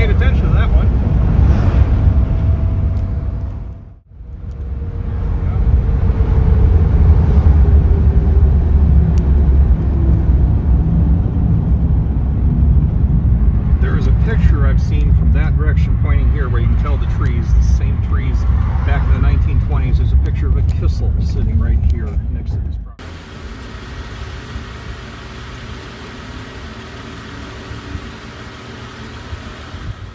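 Cabin sound of a 1939 supercharged Graham sedan on the move: its engine and road noise run loud and steady, with a brief drop about four seconds in. Some way past the middle the sound falls to a much quieter, steady background.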